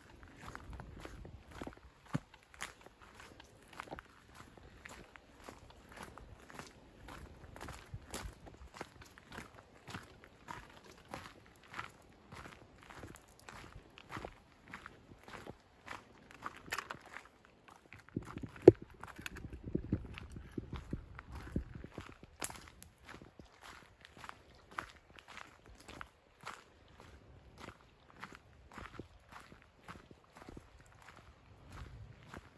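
Footsteps of a hiker walking on a gravel and dirt trail, a steady pace of about two steps a second. About two-thirds of the way through there is a single sharp knock, the loudest sound, followed by a few seconds of low rumble.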